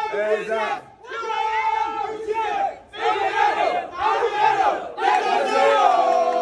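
Crowd of party supporters chanting together in unison: a run of loud shouted phrases, each about a second long, with short breaks between them.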